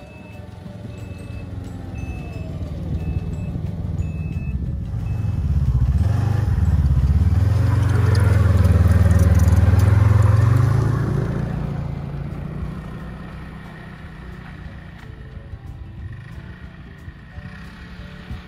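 Ski-Doo Grand Touring snowmobile engine passing close by. It grows louder to a peak about eight to ten seconds in, then fades away.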